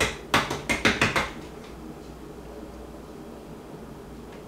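Several quick knocks of a hand tapping on the clear plastic lid of a small electric coffee grinder full of ground flax seeds, bunched in the first second and a half; after that only a low steady background.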